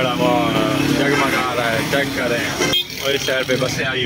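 A person's voice over road traffic with motorcycles. The voice is the loudest sound, and it breaks off briefly at a cut near three seconds in.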